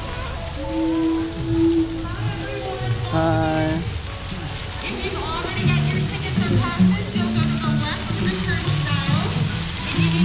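Music playing over a steady hiss of water pouring from fountain columns and splashing onto paving, with voices mixed in.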